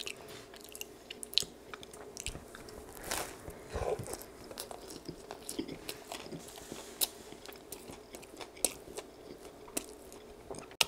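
A person biting into and chewing a toasted Subway sandwich close to the microphone, with many small, irregular clicks of bread and mouth throughout.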